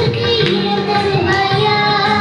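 A Tamil song with a high, child-like singing voice over instrumental accompaniment.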